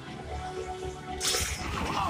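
Animated action soundtrack: background music with a short rushing sound effect a little past halfway.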